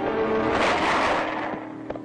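Orchestral film score with a loud noisy crash that swells about half a second in and dies away, followed near the end by a single short, sharp crack.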